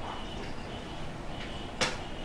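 Handling on a desk: a single sharp click near the end, as a yellow plastic tea strainer is set down, over a steady low room hiss.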